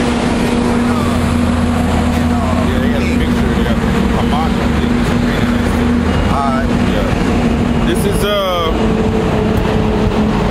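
Street traffic: a steady engine hum from idling road vehicles, with low voices in the background. A little after eight seconds in comes a quick run of rising chirps.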